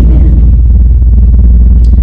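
A loud, steady low hum.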